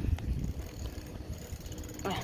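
Bicycle freewheel hub ticking rapidly as the bike coasts, over a low rumble.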